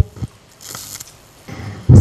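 A short pause in a woman's talk over a handheld microphone: a faint click, then a soft hiss of breath on the microphone about a second in. Her speech starts again near the end.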